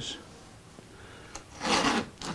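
Masking tape pulled off its roll in one short noisy rip near the end, after a quiet stretch with a faint click.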